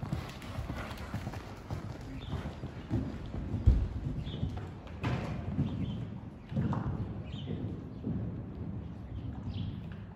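Hoofbeats of a Westphalian mare cantering on sand footing around a show-jumping course, a repeated beat of low thuds, with one heavy thud a little under four seconds in.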